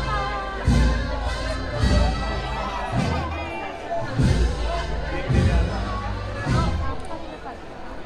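A Spanish processional wind band (banda de música) playing a march, with a deep drum beat a little more than once a second. Crowd chatter runs underneath.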